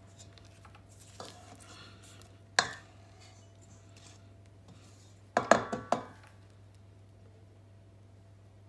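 Silicone spatula scraping a stainless steel mixing bowl and knocking against the bowl and the stand mixer's wire whisk, with the mixer switched off. There is one sharp knock about two and a half seconds in and a quick run of several knocks around five and a half seconds.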